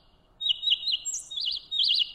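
A small bird chirping: a rapid series of high, quick rising-and-falling notes, starting after a brief pause at the very beginning.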